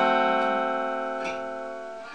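Fender Stratocaster electric guitar letting a chord ring out, fading steadily, with a light pick or string click about a second in.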